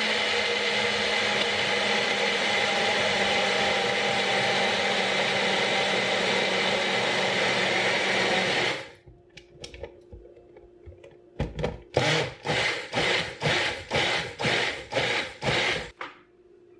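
Magic Bullet personal blender running steadily for about nine seconds, blending a thick protein shake of almond milk, ice cream and protein powder, then cutting off. After a few small clicks, it runs in about eight short pulses near the end.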